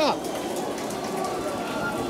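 Steady crackling roar of the Starship Super Heavy booster's Raptor engines during ascent, heard from the ground.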